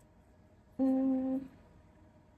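A woman humming one short, steady note for about half a second, a little under a second in, otherwise only quiet room tone.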